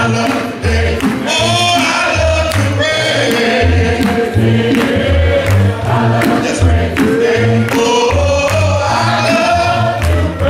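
Live gospel song: a male lead singer with a group of voices singing along, over accompaniment with a pulsing bass line.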